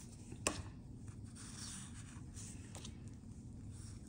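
Faint rustling and rubbing of glossy sticker sheets being handled and flipped through, with one sharp tap about half a second in.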